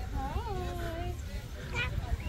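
A toddler's short, high-pitched vocal cry that rises and then falls, with a brief second sound near the end. Wind rumbles on the microphone throughout.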